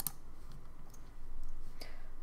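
Computer mouse button clicking once, sharply, at the start, with fainter clicks near the end.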